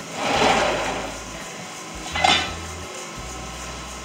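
Bulk feed bag being handled at a feed mill's hopper outlet: a rushing swell of noise lasting about a second, then a sharp metallic clink about two seconds in.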